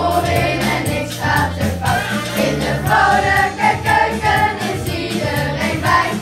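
A group of children singing a song together over instrumental accompaniment with a stepping bass line.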